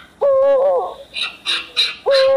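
A single hooting call, held on one pitch for about half a second, then wavering and falling away at the end. It is followed by three short hissing bursts in quick succession.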